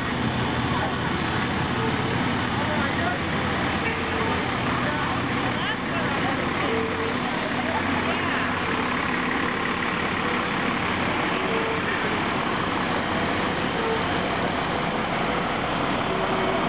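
A fire department aerial ladder truck's engine running as the truck rolls past close by, a steady vehicle noise with people's voices mixed in.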